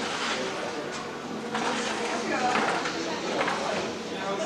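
Indistinct voices of people talking, over a steady background hubbub, growing clearer about halfway through.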